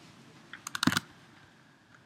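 A few computer keystrokes: one click about half a second in, then a quick run of four or five clicks just before the one-second mark.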